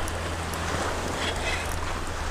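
Steady wash of small waves against a concrete-block seawall in shallow water, with wind rumbling on the microphone.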